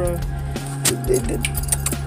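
A dog's metal chain collar jingling in a few sharp clinks as the dog moves about.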